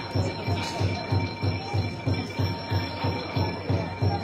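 A steady low drum beat, about four strokes a second, driving Thai traditional music for a dance performance.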